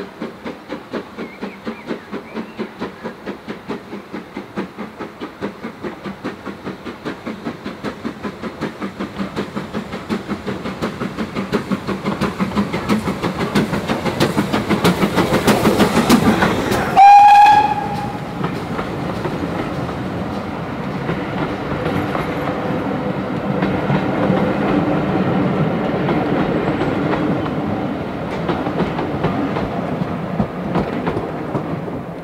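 GWR Small Prairie 2-6-2 tank engine No. 5542 working a train, its two-cylinder exhaust beating evenly and growing louder as it approaches. A short whistle blast comes as it passes, a little over halfway through. The coaches then rumble and clatter past on the rails.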